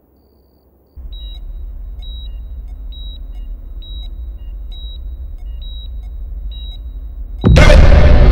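Hospital patient monitor beeping at a steady pace, about one short high beep every second, over a low rumbling drone that starts about a second in. Near the end a sudden loud burst of dramatic film music cuts in.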